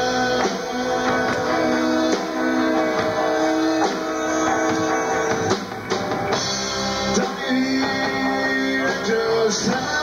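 Rock band playing live in an instrumental stretch of a song: guitar leading over a drum kit, with held notes and chords.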